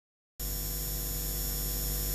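Audio cuts in about half a second in as a steady electrical mains hum with hiss, the noise floor of a live sound system before the music starts.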